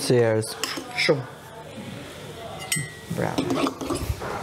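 Kitchen utensils and dishes clinking and clattering on a worktop during food preparation, with a short ringing clink near the end.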